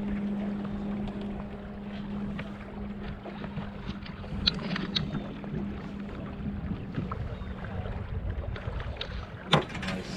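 Small sailboat under way: wind and water noise, with an outboard motor's steady low hum fading away over the first few seconds as the boat goes over to sail. A few sharp knocks in the middle and a louder one near the end.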